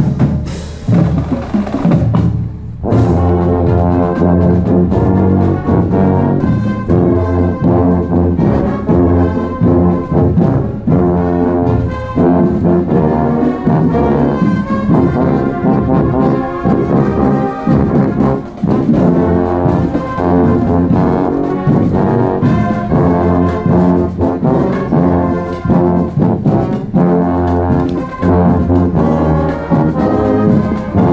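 Marching band playing: drum hits alone at first, then about three seconds in the brass section comes in with a loud sustained tune, trombones nearest and loudest, over the continuing drums.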